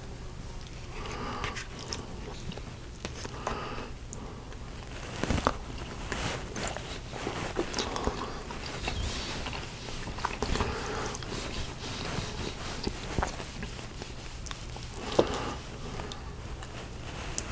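Close-miked chewing and mouth sounds of a man eating a meatloaf dinner with a metal spoon, with scattered short clicks and two sharper louder clicks, about five seconds in and near the end, of the spoon against the dish.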